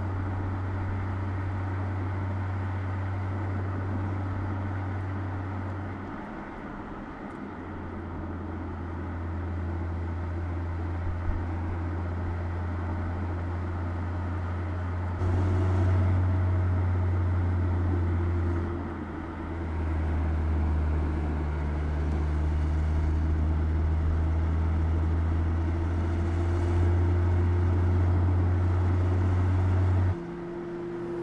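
Mercedes-Benz E-Class Coupé driving at speed: a steady low engine hum over road and tyre noise. The level and pitch change abruptly several times, and the engine note climbs slowly over the last third.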